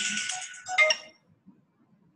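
A phone ringtone tune playing, ending with a sharp burst and stopping about a second in; faint low sounds follow.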